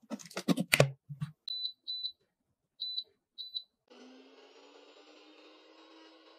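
A plastic blender lid clunking down onto the jug, then four double beeps from the high-speed blender's control panel. About four seconds in the motor starts with a slight rising whine and settles into steady running as it blends the contents to a milkshake consistency.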